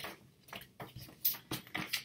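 A glossy paper fold-out poster from a CD booklet being folded back up by hand, crinkling and rustling in a run of short, crisp bursts.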